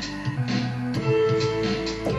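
Electronic music from Ableton Live: a looped drum beat and a recorded bassline, with held notes played live on a keyboard used as a MIDI controller. There is a percussive hit about a second in.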